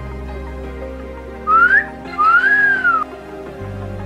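A person whistling two short phrases over background music: a quick upward glide, then a longer note that rises and falls back.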